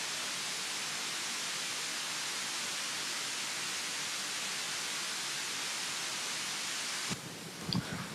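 Steady hiss, like static on an open audio line, that cuts off suddenly about seven seconds in, giving way to faint knocks and room sound.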